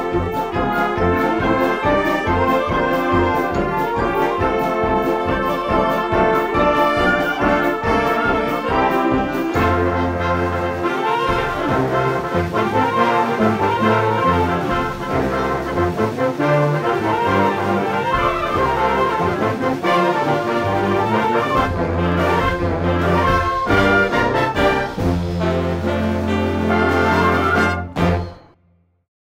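Youth concert band playing, its parts recorded separately and mixed together: brass and woodwind over short repeated low notes, about two or three a second, for the first ten seconds, then held low notes beneath moving melody lines. The music stops on a final chord at the close.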